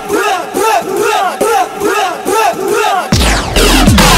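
Dubstep mix breakdown: the bass drops out and a shouted, crowd-like vocal sample repeats about four times a second, each call rising and falling in pitch. About three seconds in, the heavy sub-bass drops back in under a falling sweep.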